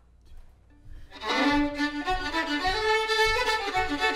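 Two fiddles start playing a fiddle tune together about a second in, after a brief near-quiet moment with a few faint small sounds.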